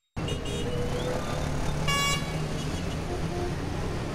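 City street traffic ambience, with a short car horn toot about two seconds in.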